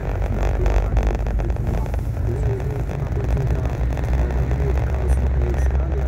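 Car driving at road speed, heard from inside the cabin: a steady low rumble of engine and tyres, with music playing over it.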